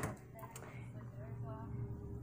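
A sewing machine's stitching cuts off right at the start. After it, only a faint voice from a video playing in the background of the room, over a low steady hum.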